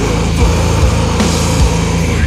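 Blackened sludge-doom metal: a heavily distorted, sustained guitar and bass drone, with a steady drum beat landing about two and a half times a second.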